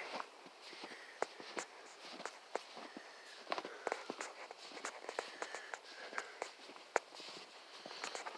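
Footsteps crunching through snow: an uneven run of soft crunches and clicks, with one sharper click about seven seconds in.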